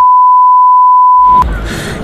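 A loud, steady single-pitch censor bleep, dubbed over the spoken answer and blanking out all other sound. It lasts about a second and a half and cuts off suddenly.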